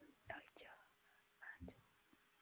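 Near silence, broken by a few faint, brief fragments of a quiet voice.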